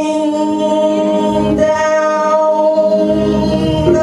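Gospel music: a man singing into a microphone over a held organ chord, which changes just before the end.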